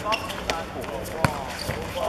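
A futsal ball kicked on a hard court: a light touch about half a second in, then one sharp, loud strike of the shot just past a second in. Voices of players and spectators are heard under it.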